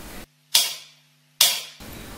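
Two sharp clicks about a second apart, each dying away over a fraction of a second, with dead silence between them.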